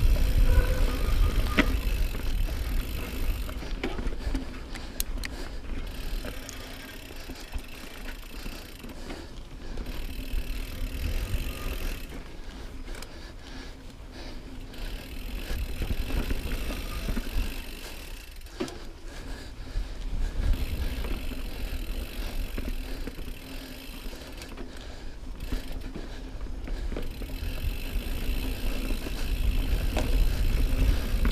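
2018 Norco Range full-suspension mountain bike descending a dirt singletrack: tyre noise and rushing air on the camera microphone, swelling and fading with speed every few seconds, with scattered clicks and rattles from the bike over bumps.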